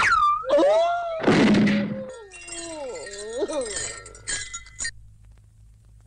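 Cartoon sound effects for a pole vaulter crashing into a stone wall: swooping whistle-like tones, a loud crash about a second in, then tinkling, clinking sounds and falling glides that fade out near the end.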